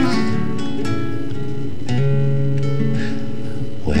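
Acoustic guitar accompanying a folk ballad between sung lines: a chord struck at the start and another about two seconds in, each left to ring. The singer's voice comes back in at the very end.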